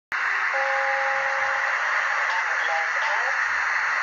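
Onboard sound from a Märklin H0 model of the E93 electric locomotive, coming through the model's small speaker as it creeps forward: a loud, steady hissing running sound. A held two-note tone lasts for about a second near the start.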